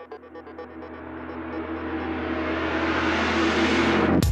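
Title-sequence theme music: a fast pulsing synth figure fades into a rising, swelling whoosh that grows steadily louder over a steady low drone, building toward the beat.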